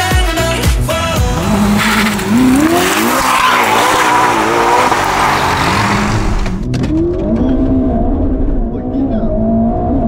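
Supercar engines revving hard, a loud rush of engine and exhaust noise rising and falling in pitch after the music ends. About two-thirds of the way in it gives way to the duller engine hum heard inside the cabin of a moving Ferrari.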